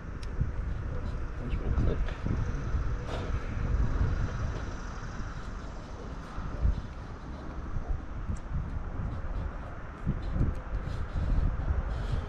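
Crimped pins being pushed into a Deutsch connector housing, seating with a few small clicks, over a steady low rumble of wind on the microphone.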